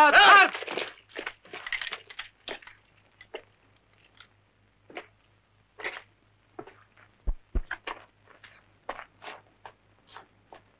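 Scattered crunching steps on dirt and gravel and short clicks of rifles being handled, as soldiers present arms and the line is inspected, with two dull low thumps about seven seconds in.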